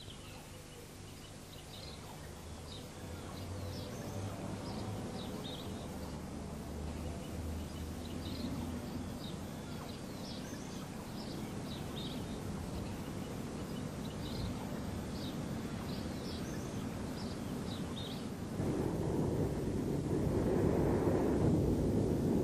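Small birds chirping repeatedly over a steady rushing outdoor noise, which grows gradually and gets louder near the end.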